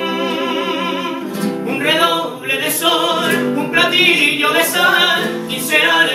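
Male vocal quartet singing in close harmony with an acoustic guitar. They hold one chord for about the first second, then move into a faster, broken sung line.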